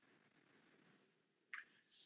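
Near silence: faint room tone of a video call, with two faint brief sounds in the second half.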